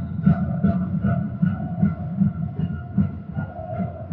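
A steady drumbeat, about two and a half beats a second, echoing in the sports hall, with a faint held tone over it.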